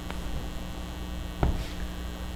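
Steady electrical mains hum, a low buzz, on the recording during a pause in speech, with a single short click about one and a half seconds in.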